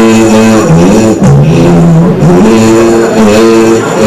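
A man singing a slow melody into a handheld microphone, with long held notes joined by slides up and down in pitch.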